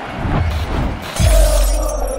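Logo sting of a video intro: a glass-shatter sound effect with a sudden deep bass hit about a second in, over music.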